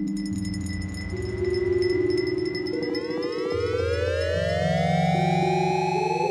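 Ambient synthesizer music from the Moog Filtatron app: low held notes that step from pitch to pitch under a dense wash of tones gliding upward, with a thin steady high tone that fades about halfway through.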